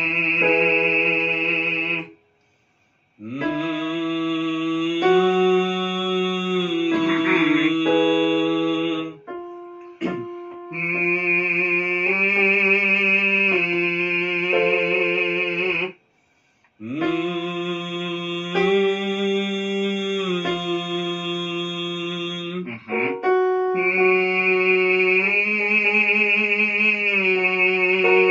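Electronic keyboard playing held chords that move step by step, as accompaniment for vocal warm-up exercises. The sound breaks off completely twice, about two seconds in and just past the middle.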